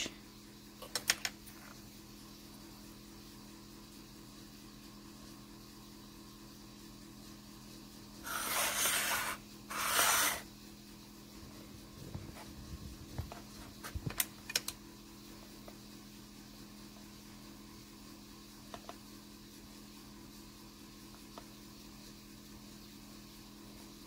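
Small handling sounds of cutting polymer clay with a metal cutter and craft knife on an acrylic tile: a few light clicks, and two short rasping scrapes about eight and ten seconds in, over a steady low hum.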